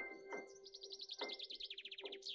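Quiet solo piano, a few single notes struck and left to ring, laid over recorded birdsong: a small songbird's fast, high trills run through the piano.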